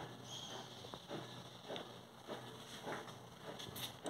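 Faint rustling of a packet of dry bread yeast being shaken out over a bowl of flour. It comes as a few soft, brief rustles at roughly even spacing.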